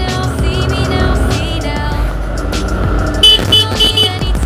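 Motorcycle engine running under music. Three short horn toots come near the end, the loudest sounds here.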